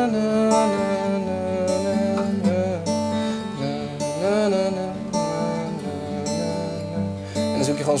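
Acoustic guitar strummed on chords around D, with a voice singing a wordless melody over it: a songwriter improvising a tune over the chords.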